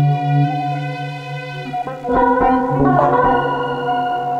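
Korg AG-10 General MIDI rompler playing held, sustained synthetic tones driven by MIDI from the Fragment synthesizer. About two seconds in, a denser and louder cluster of notes comes in, then settles back to a few steady held notes.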